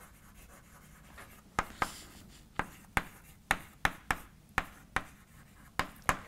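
Chalk writing on a chalkboard: a quick run of about ten sharp taps as the chalk strikes the board, with faint scraping between them. The first second or so is nearly quiet.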